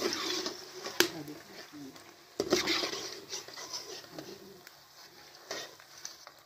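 A metal slotted skimmer scraping and clinking against an iron karahi as fried eggplant pakoras are lifted out of hot oil, with a few sharp knocks, over the oil's sizzle. Brief indistinct voices are mixed in.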